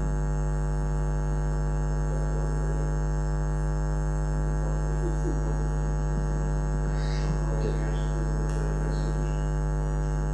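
Loud, steady electrical mains hum, a low buzz with a stack of overtones, running unchanged under the room sound.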